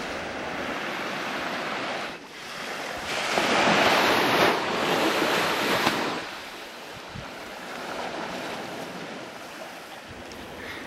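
Ocean surf washing onto the shore, with wind. The wash swells louder for a few seconds in the middle, then settles back.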